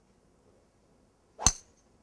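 A golf driver's clubhead striking the ball once, a single sharp crack with a brief high ring, about one and a half seconds in.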